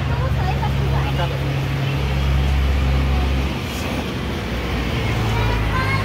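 A motor vehicle's engine running close by on the street, a steady low hum with a deeper drone joining from about two seconds in for a second and a half, under scattered voices of people nearby.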